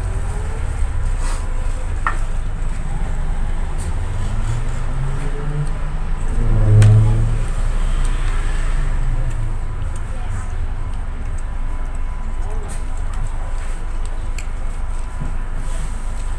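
Steady low rumble of a moving city bus heard from inside the passenger cabin, with a short low hum about seven seconds in.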